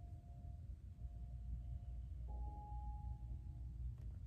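Soft, slow background music of long sustained notes over a steady low room hum: one note fades out from the start, and a slightly higher note comes in about two seconds in and holds.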